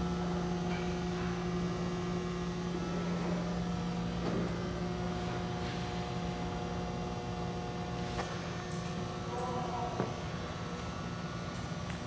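Steady electric hum of a conveyor's 10-horsepower three-phase drive motor and gear reducer running, with a few faint clicks. The upper tones of the hum fade out and come back as it goes.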